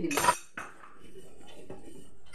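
Steel ladle scraping against a steel pan while stirring custard: one sharp scrape right at the start, then a few faint knocks.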